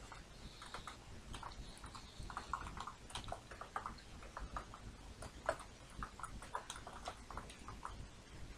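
Typing on a computer keyboard: irregular runs of quick keystrokes.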